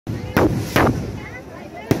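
Fireworks going off: three sharp bangs, the first two about half a second apart, the third near the end.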